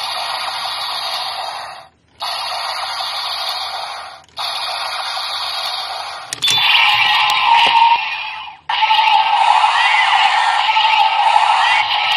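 Electronic sound effects from a Black Spark Lens transformation toy's small built-in speaker. A roughly two-second effect plays three times with short gaps, then a click comes about six seconds in. A different, louder effect follows from about nine seconds.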